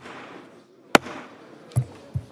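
A wooden gavel rapping sharply about once a second, each rap echoing in a large chamber, with a low murmur of the room between raps.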